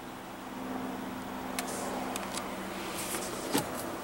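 Steady low hum inside the cabin of a 2016 Volvo XC90 idling, with a few faint clicks scattered through it.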